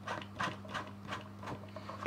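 Plastic tap connector being screwed by hand onto the head of a Superfish EcoFlow 120 canister filter: a series of faint clicks, a few a second, as the threads turn. A low steady hum runs underneath.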